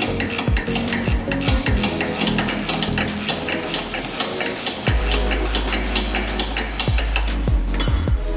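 Steel combination spanners clinking and scraping rapidly on the nut of a front anti-roll bar link as it is turned, over background electronic music with a low bass beat that settles into a steady bass tone about five seconds in.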